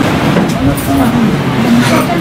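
Indistinct chatter of several people talking at once, with no single voice standing out.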